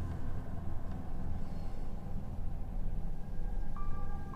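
Low, steady drone of a soft ambient background score, with a few held high notes coming in near the end.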